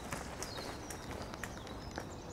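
Outdoor ambience of small birds chirping, with light, irregular footsteps on a paved path over a steady low background hum.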